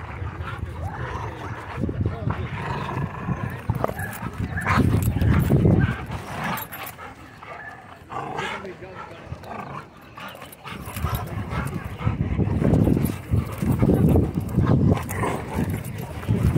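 Dogs vocalizing during play, with bark-like sounds. Loud, rough low sounds come close to the microphone about four seconds in and again from about twelve seconds on, over people's voices in the background.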